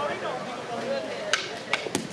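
A thrown bowling ball striking the hard ground, heard as a few sharp knocks in the second half, over people chatting.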